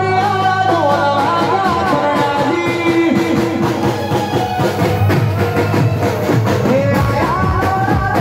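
Live Gujarati folk song: a male singer on a microphone with a band behind him, a steady drum beat driving the rhythm.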